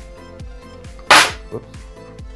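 Background electronic music with a steady beat. About a second in comes a single sharp, loud clack of hard plastic as the smartphone grip is handled.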